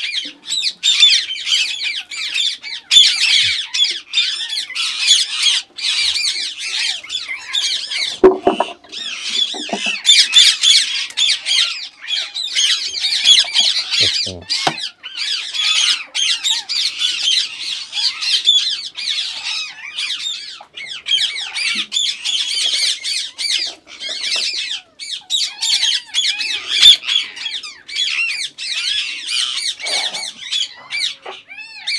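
A flock of Indian ringneck parakeets squawking and calling continuously, many high-pitched calls overlapping into a steady din.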